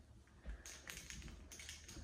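Faint light taps and clicks over quiet room tone, starting about half a second in.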